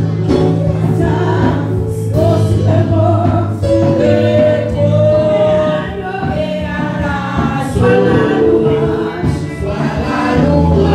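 Live gospel worship singing: a woman leads and a group of women sing backing vocals, over steady low held accompaniment notes.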